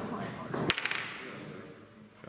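A sharp clack about two-thirds of a second in, then a few quicker, lighter taps: wooden chess pieces and a chess clock struck in fast bughouse play.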